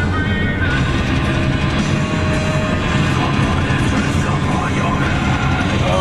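Music playing loudly over the steady hum of a van on the road.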